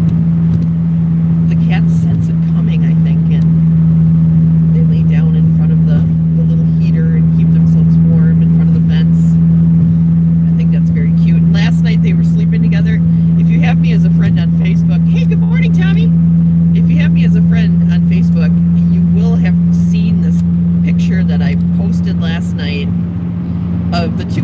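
A car's engine and road noise droning steadily inside the cabin while it drives, with a person talking over it.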